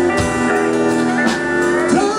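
Live country band playing an instrumental passage between sung lines: guitars with pedal steel guitar over drums, with some notes bending in pitch.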